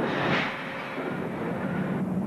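Steady industrial noise of smelter plant machinery: a continuous, even hum and rush with no distinct events.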